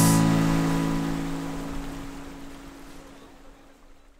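Final chord on a Martin GPCPA5K acoustic-electric guitar ringing out and dying away, fading to silence near the end.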